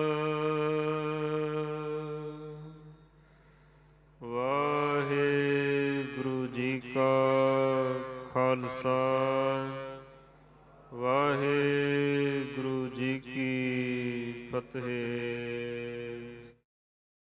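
Gurbani chanted in long, held notes. A held note fades out in the first few seconds, then two drawn-out chanted phrases begin about four and eleven seconds in, each opening with a rising slide.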